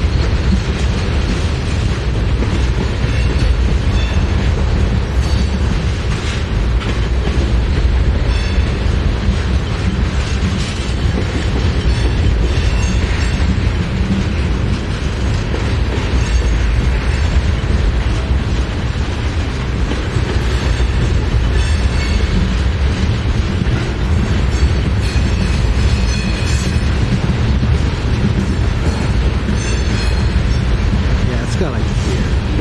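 Freight train of tank cars and covered hoppers rolling past close by: a steady loud rumble of steel wheels on rail with clickety-clack over the rail joints and a few brief faint wheel squeals.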